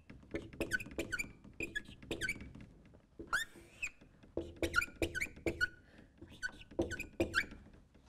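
Dry-wipe marker squeaking on a whiteboard as arcs and numbers are drawn: a run of many short squeaks whose pitch bends, with a longer rising squeak about three seconds in.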